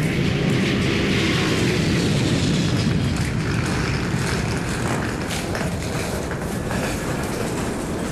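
Steady, loud rumbling and rattling background noise that eases a little about halfway through.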